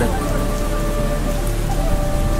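Steady rain sound effect with a few soft held synth notes underneath, in the intro of a rap track.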